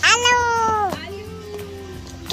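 A small child's loud, drawn-out vocal squeal lasting about a second and dropping in pitch as it ends, followed by a quieter held note.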